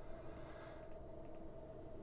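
Quiet room tone: a faint steady hum with a thin high tone running through it.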